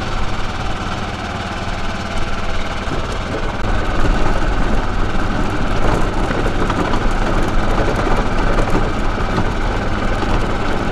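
Truck engine running as the vehicle rolls slowly, a steady low hum with a rushing noise that grows louder about four seconds in.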